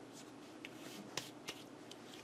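Faint handling noises: a few soft clicks and rustles over low room hiss, with two sharper clicks just past the middle.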